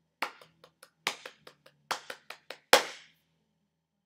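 Hand clapping: a short rhythm pattern of about a dozen claps in an uneven rhythm, ending on the loudest clap about three seconds in.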